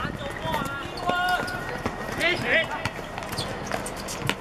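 Players on a football pitch shouting short calls to each other during play, with scattered sharp knocks from the ball being kicked and from running feet.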